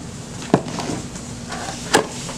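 Cardboard reel packaging being handled: an inner box sliding out of its sleeve with light rustling, and two sharp knocks, one about half a second in and one at the end.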